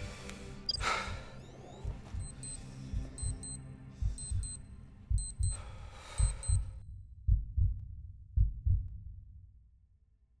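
Film soundtrack: a heartbeat-like double thump about once a second under the score, with faint paired high electronic beeps, also about once a second, over the first seven seconds. It all fades out near the end.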